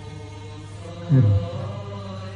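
Mournful background music: a low, held chanted drone on one steady note, with a louder falling note about a second in.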